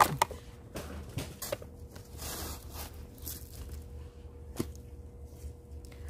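Granular potting mix poured from a plastic scoop into a ceramic pot: a short trickling hiss about two seconds in, among scattered light clicks and taps of granules and tools.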